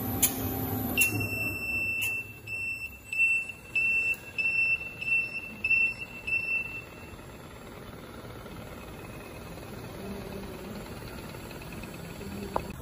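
Electronic beeper sounding one long beep about a second in, then a run of short beeps about two a second that stop about seven seconds in. Under it a lapping machine's low hum fades about a second in, with a few sharp clicks before the beeps.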